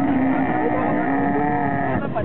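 A camel giving one long, low, steady call while kneeling as riders climb onto its back.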